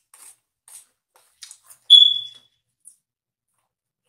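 A single short, high-pitched electronic beep about two seconds in, fading quickly, with a few faint clicks and rustles before it.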